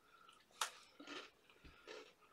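Faint biting and chewing of a hard, crunchy chocolate chip cookie, with one sharp crunch about half a second in and softer crunches after it.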